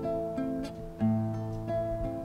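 Nylon-string classical guitar plucked fingerstyle: a few separate notes that ring on, with a low bass note about halfway through, played slowly as part of a milonga accompaniment pattern.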